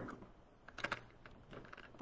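A few light clicks and taps from painting materials being handled, bunched together a little under a second in.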